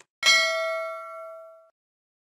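Notification-bell 'ding' sound effect for the clicked subscribe bell: one chime that rings with several overtones and fades out within about a second and a half.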